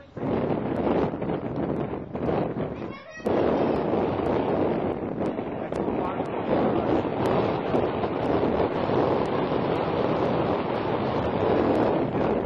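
Wind buffeting the microphone: a loud, rushing noise that drops out briefly near the start and again about three seconds in, then holds steady.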